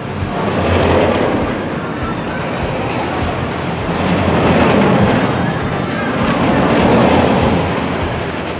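Outro music with a steady ticking beat, over a rushing noise that swells and fades about every three seconds.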